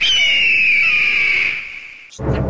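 A high whistle-like tone with a hiss behind it. It starts suddenly, falls slightly in pitch and fades out over about two seconds.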